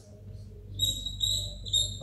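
Dry-erase marker squeaking on a whiteboard while writing, in several short high-pitched strokes from about a second in. The marker is running low on ink.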